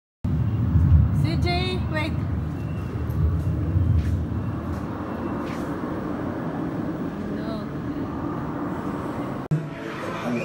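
Steady low rumble of indoor ambience with faint voices. A brief high-pitched voice wavers up and down about a second and a half in.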